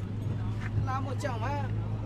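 Background voices of people talking, over a steady low hum.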